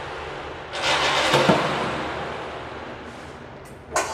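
Outside traffic noise through the closed windows: a vehicle passing, swelling about a second in and fading away slowly, with a short click near the end.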